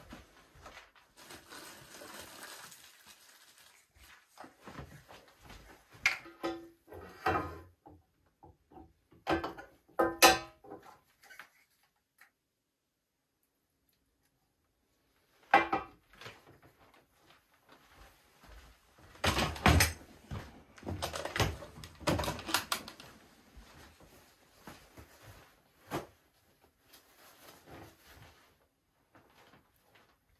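Scattered knocks and clunks of containers and tools being picked up and set down on a hard workbench, in clusters separated by pauses, with some rustling.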